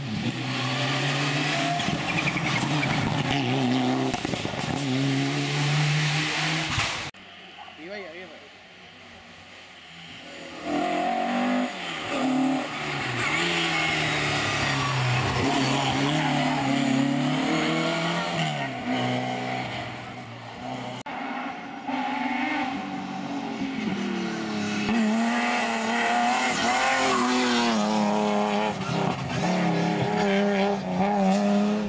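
Rally cars driven hard through tarmac bends, engines revving up and down through gear changes. The first, a Mitsubishi Lancer Evo's turbocharged four-cylinder, cuts off abruptly about seven seconds in. After a few quieter seconds a second rally car comes in, climbing and dropping through the revs to the end.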